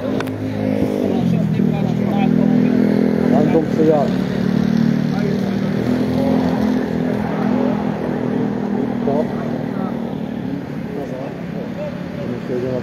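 A motor vehicle's engine running steadily close by, its pitch dropping about a second in as it eases off, with brief voices over it.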